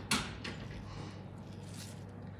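A short rustle near the start and a faint steady low hum underneath.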